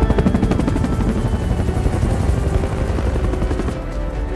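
Helicopter rotor chop, a fast, even beat of the blades, which cuts off shortly before the end.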